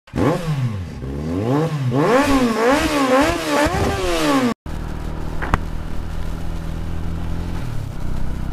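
Motorcycle engine revved over and over, its pitch rising and falling about twice a second. After a brief dropout about halfway through, the engine idles steadily, with a single sharp click about a second later.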